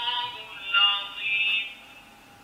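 Quran reading pen playing a short sung, melodic voice clip through its small built-in speaker, thin and telephone-like in sound. It stops shortly before the end.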